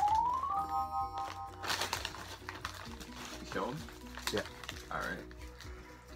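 An edited-in sound effect: a clean tone rising in pitch, then a held chord that stops short after about a second and a half, over background music. A plastic chip bag crinkles at about two seconds.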